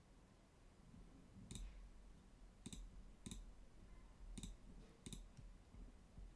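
Five faint computer mouse clicks, spread unevenly over a few seconds.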